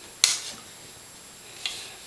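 Two sharp clicks from a compound bow being handled, a loud one with a short ring just after the start and a softer one near the end.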